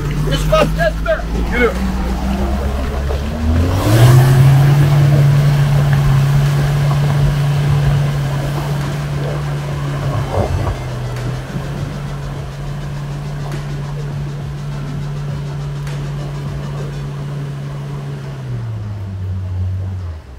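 Pickup truck's engine pulling in second gear up a deep muddy rut. It revs up about four seconds in, holds a steady drone under load, and drops in pitch near the end.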